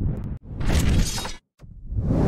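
Produced transition sound effect for a logo animation: three noisy bursts spread across the whole range, the middle one lasting about a second and the last starting near the end.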